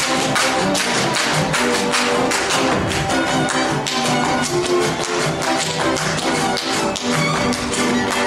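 Live Hungarian folk dance music with held pitched notes, overlaid by a dense run of sharp taps and stamps several times a second, typical of dancers' boots striking the stage.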